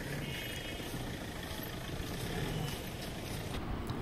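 Outdoor vehicle noise: a car engine running nearby, a steady low hum that rises and falls slightly over the background.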